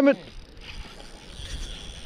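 A shout of "Salmon!" right at the start. Then a spinning reel's drag buzzes steadily as a freshly hooked salmon pulls line off against the bent rod.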